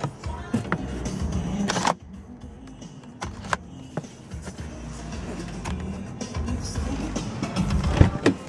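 Music playing softly from the car's audio system, louder for the first two seconds and then dropping away suddenly, with a few sharp plastic clicks as the overhead sunglass holder and sun visor are handled.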